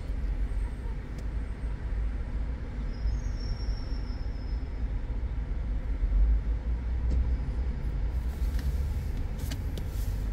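Steady low rumble of a car idling while standing still, heard from inside the cabin, with a few light clicks near the end.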